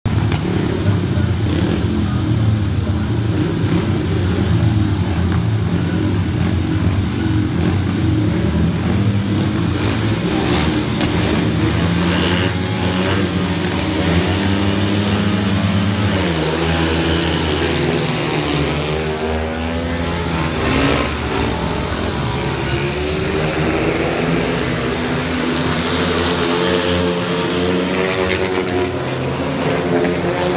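Four 500 cc single-cylinder speedway motorcycles revving hard at the start gate. About halfway through they launch together and race away, and the engine note rises and falls as they accelerate and change speed into the bend.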